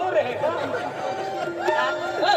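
Several voices talking over the stage loudspeakers, with music underneath.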